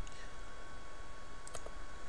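Two quick clicks of a computer mouse about a second and a half in, as a presentation slide is advanced, over a steady faint hiss.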